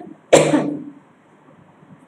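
A woman's single sharp cough about a third of a second in, fading out over about half a second.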